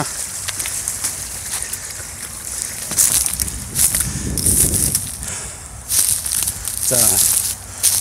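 Dry reeds and grass rustling and crackling close to the microphone as someone pushes through them, in uneven bursts with handling noise. A man's voice starts near the end.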